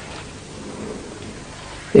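A pause in a man's talk through a microphone: only a faint, steady hiss of room and recording noise. His voice comes back right at the end.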